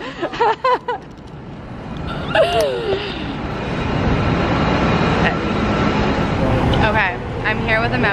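A steady noise that builds up over a few seconds and holds, with short bits of talk at the start and near the end.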